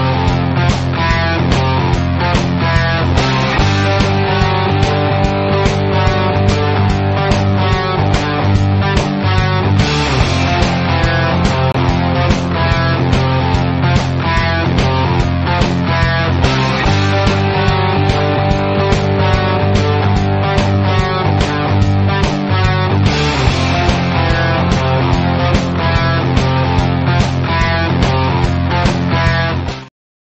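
Rock music track with guitar over a steady drum beat, its chords changing every few seconds, cutting off suddenly at the end.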